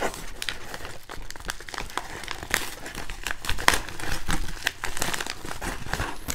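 Yellow padded paper mailer being torn open by hand: dense crinkling and crackling of the paper, with many small sharp snaps throughout.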